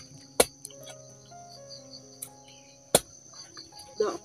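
Steady high-pitched insect chirring, crickets, with faint music underneath, broken by two sharp knocks about two and a half seconds apart that are the loudest sounds.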